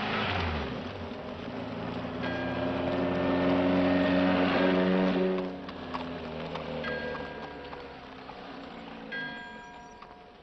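Soundtrack of a 1940s film: music of held chords with bell-like tones, swelling and then fading back, over the steady hiss of an old film soundtrack.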